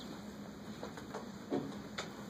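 Quiet room tone with a steady low hum and a few faint ticks, broken by one short spoken syllable about one and a half seconds in.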